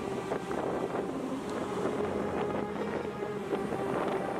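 Wind buffeting the microphone with surf, over a steady low hum.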